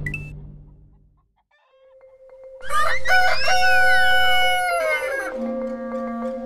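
A rooster crows once, a single long crow of about two and a half seconds that starts a little over two seconds in. Just before it, music fades out to near silence.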